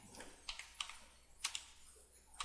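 Computer keyboard keys clicking faintly as a few separate keystrokes are typed, spaced irregularly.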